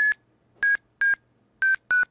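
FlySight GPS vertical-speed tones played through FlySight Viewer's audio simulation: five short high beeps that come closer together and step slightly lower in pitch. The pitch tracks vertical speed, so the falling pitch means vertical speed is dropping, and the quickening rate means it is changing steeply.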